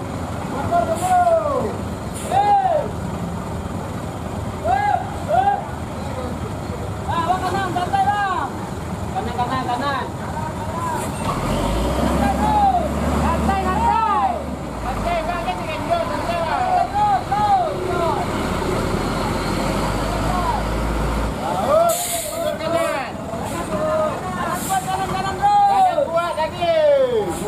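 Hino truck's diesel engine labouring on a steep, slippery uphill hairpin, with a deep rumble through the middle stretch, while people shout short calls again and again. A sharp air-brake hiss comes a little over three quarters of the way in.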